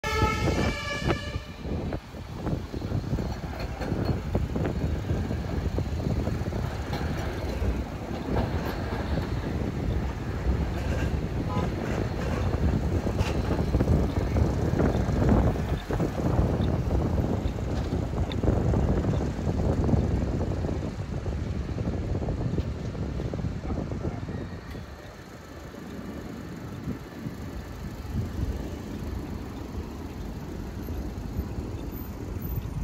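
City street traffic at a tram crossing: the fluctuating noise of cars, motor scooters and trams passing, with a short horn-like tone for about the first second and a half. The traffic noise grows quieter near the end.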